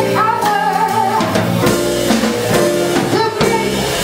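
A small jazz band playing live: a woman singing a melody into a microphone over a drum kit and electric guitar.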